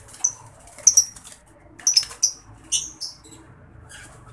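Male lovebird giving short, shrill squawks in about four quick clusters as a hand grabs it in its cage: alarm calls at being caught.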